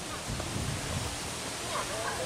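Steady outdoor background noise with faint voices of people nearby, briefly clearer near the end.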